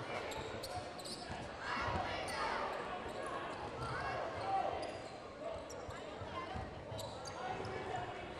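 Basketball being dribbled on a hardwood gym floor under a quiet murmur of crowd voices in a large gymnasium.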